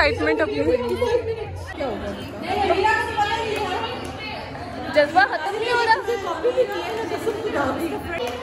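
Young women talking and chatting in a room, several voices overlapping.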